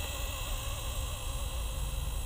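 Faint, wavering whine of a Blade 230S V2 electric RC helicopter hovering hands-off at a distance, under a steady low rumble of wind on the microphone.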